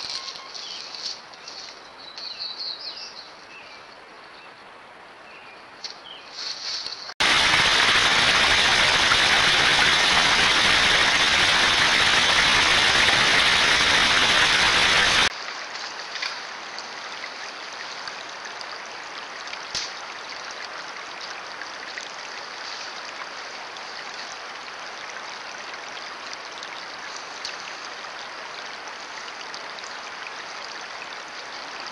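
A small creek running steadily over rock ledges through the second half. Before it, birds chirp faintly, then a loud, even rushing noise starts suddenly, holds for about eight seconds and cuts off.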